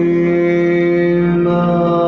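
Syriac liturgical hymn: a male voice sings one long, steady held note.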